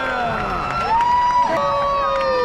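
A single voice holds long drawn-out notes or calls over crowd noise, each sliding down in pitch as it ends: one high note in the middle, then a lower one running past the end.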